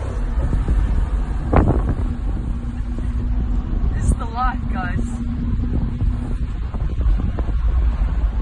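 Wind buffeting the microphone and a low rumble from riding in the open rear of a Mercedes-Maybach G650 Landaulet on the move. A sharp knock comes about a second and a half in, and a short vocal exclamation comes about four seconds in.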